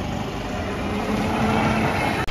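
Hero Vida V1 Pro electric scooter riding up and passing close by, a faint low hum over tyre and road noise that grows gradually louder.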